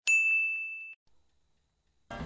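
A single bright, bell-like ding that strikes sharply and rings on one high tone, fading out about a second later.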